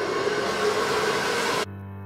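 Hand-held Lytron hair dryer blowing, a steady whooshing whir that cuts off suddenly about a second and a half in. Music with bell-like chiming notes takes over at the cut.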